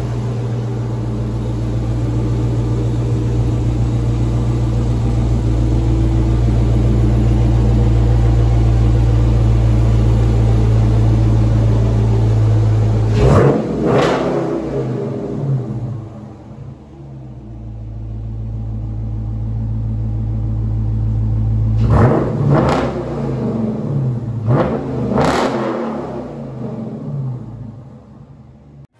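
Dodge Challenger R/T's 5.7-litre HEMI V8 idling steadily, then blipped twice about 13 seconds in. After a short lull it is blipped several more times near the end.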